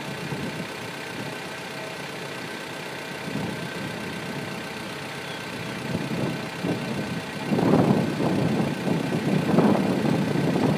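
1999 Honda Civic's 1.6-litre four-cylinder engine idling steadily, heard from over the open engine bay. About seven and a half seconds in, a louder, rougher noise rises over the idle.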